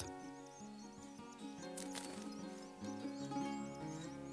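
Soft background music with held notes, over a quick run of faint, high, short chirps from small birds, about three a second.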